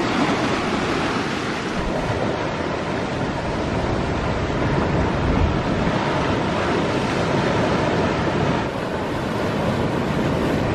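Sea surf washing in over sand and breaking against rocks: a steady rush of waves.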